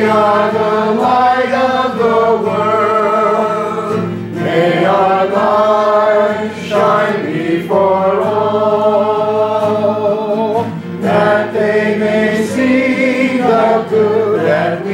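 A slow hymn sung in church, led by a cantor with a guitar, in phrases of long held notes with short breaths between them.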